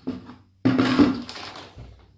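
Plastic groundbait bag rustling and crinkling as it is grabbed and lifted, a sudden burst of crackle a little over half a second in that fades within about a second.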